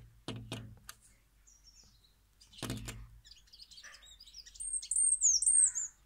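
A small bird calling right at the microphone: a quick run of high, thin chirps with downward-sliding notes, growing loudest near the end. Before the calls there are a few brief rustling knocks in the first second and again around the middle.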